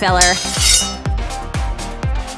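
Background music with a steady beat; about half a second in, a bright metallic ring and scrape of a sword being drawn.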